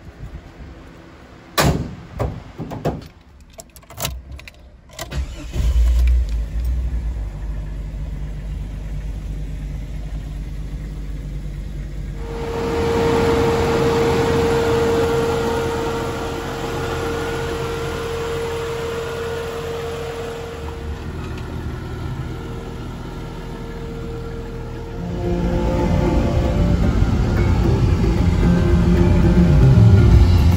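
A few sharp knocks and slams as the hood of a 1999 Jeep Cherokee XJ is shut, then its engine starts about five seconds in and runs. A steady single tone sounds over the running engine through the middle stretch. Near the end the engine grows louder as the Jeep drives off, heard from inside the cab.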